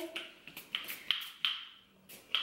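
A pump-spray bottle of hydrating hair shine spray giving several short, quick spritzes, about three a second, as it mists the hair.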